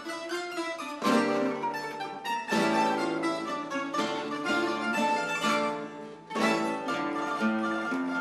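Live acoustic guitars and other plucked string instruments playing together in an instrumental passage, phrase after phrase, with brief breaks between phrases.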